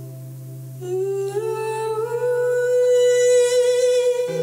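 A wordless live vocal line over a steady low sustained tone. The voice slides upward about a second in, then holds one long note.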